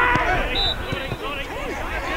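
Several players shouting and calling to one another across an open football pitch, their voices overlapping.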